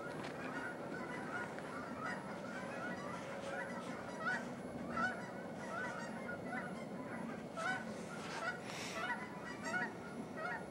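A large flock of birds calling: many short calls from many birds, several a second and overlapping, over a steady low background hum.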